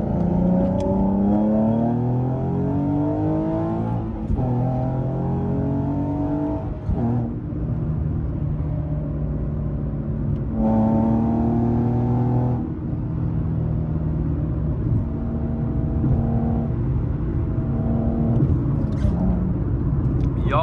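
Nissan 370Z's V6 with a modified exhaust, heard from inside the cabin as the car accelerates through the gears. The engine note rises, breaks for gear changes about four and seven seconds in, then holds steady at cruise, swelling louder for a couple of seconds around the middle.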